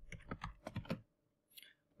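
Computer keyboard typing: a quick run of keystrokes through the first second, then a pause.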